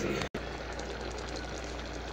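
A covered pot of rice boiling on a gas stove: a steady hiss with a low hum underneath, cutting out briefly about a third of a second in.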